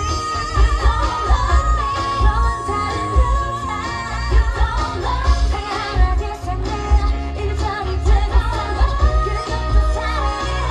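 K-pop song with female vocals over a heavy, steady bass beat, played loud through stage speakers for a dance routine.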